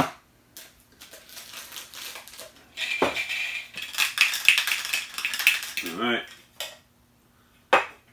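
A metal can lid clinking down on a tabletop, then a plastic wrapper crinkling and crackling as a small vinyl figure is taken out of a Funko Soda can. There are a couple of small knocks near the end.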